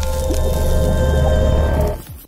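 Loud logo intro sting: produced music and sound effects, a deep sustained rumble under several held tones, dropping away sharply at the very end.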